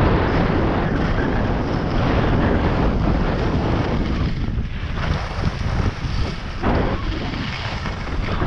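Wind rushing over the microphone of a camera carried by a skier moving downhill, mixed with the hiss of skis sliding over packed snow. The noise is loud and steady, with a couple of brief dips partway through.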